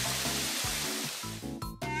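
Cartoon shower-spray sound effect: a hiss of running water that fades out after about a second and a half, over light background music.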